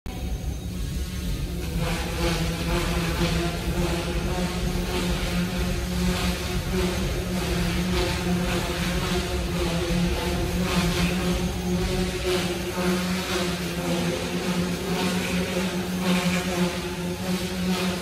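Goosky S1 micro RC helicopter in flight: its rotor and motor make a steady pitched hum with a buzzing whine above it, filling out about two seconds in and wavering slightly as the throttle changes.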